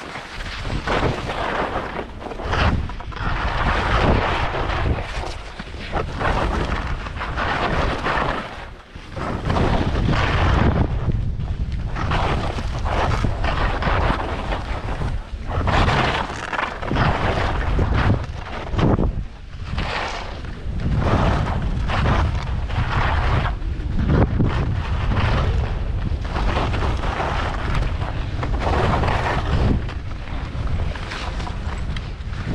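Wind buffeting a camera microphone while skiing fast downhill, with the hiss of skis scraping over firm snow rising and falling in surges through the turns.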